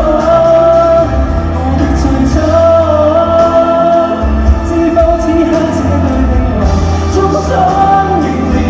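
Male pop singer holding long sung notes on open vowels through a handheld microphone, over pop-ballad band accompaniment.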